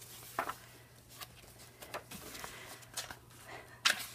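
Magazine pages being turned by hand: quiet paper rustles and a few soft taps, the loudest just before the end.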